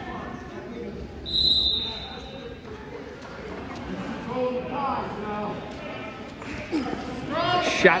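Wrestlers hand fighting on a gym mat: dull thumps of feet and bodies in a large echoing hall, with a brief high squeak about a second and a half in and faint voices in the background. A man calls out "Shot" at the very end.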